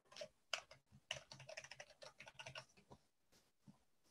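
Faint typing on a computer keyboard: a quick, uneven run of keystrokes from about half a second in until about three seconds in.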